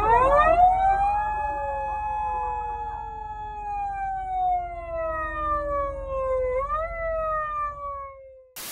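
Police car siren wailing: the pitch rises quickly at the start, then falls slowly for several seconds, rises briefly again about seven seconds in and falls once more, over a low traffic rumble.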